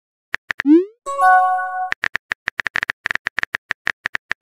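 Texting-app sound effects. A few keyboard tap clicks are followed by a short rising pop for a sent message, then a brief multi-tone chime for an incoming message. About halfway through, a fast run of keyboard clicks begins, several a second, as the next message is typed.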